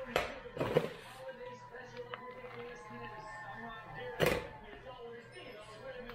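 A spoon scooping glutinous rice from a plastic bowl and tipping it into a banana-leaf cone, with the leaf rustling. Two quick scrapes come just after the start and a louder one about four seconds in.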